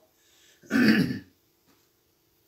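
Someone clearing their throat once, a short rough burst of about half a second just before the middle.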